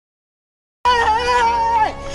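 Silence, then about a second in a person's voice breaks into a long high-pitched cry, held on one pitch before dropping off near the end.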